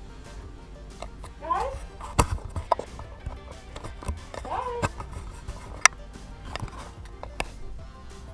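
A muffled voice in the background, twice briefly, over a low steady hum, with several sharp clicks and knocks; the loudest knock comes near the middle.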